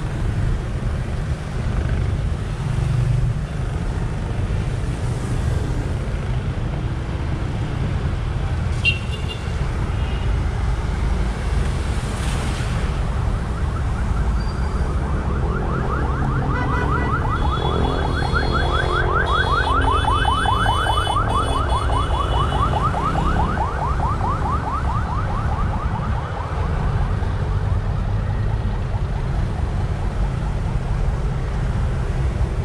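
Steady rumble of road traffic passing on a wet road. About halfway through, an electronic siren or alarm starts a fast, repeating warble, loudest for a few seconds before it fades about ten seconds later.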